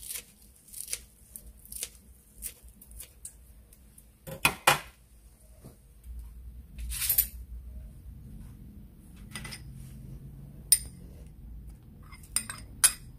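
Kitchen scissors snipping fresh herbs over a stainless steel bowl: a series of short separate clicks, with a louder double snip about four and a half seconds in. Later come a few sharp clinks of utensils and dishes, the loudest near the end.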